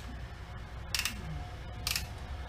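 Hand ratchet with a T25 Torx bit driving a screw into a plastic headlight mount, giving short bursts of sharp clicking about a second in and again near the end as the screw goes in.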